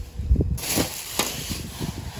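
Small plastic toy figures knocked about and clattering on a hard tabletop, with hand-handling rustle and several sharp clicks.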